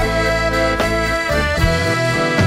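A band plays an instrumental passage with no singing: a held, reedy melody line over a bass line and drum hits.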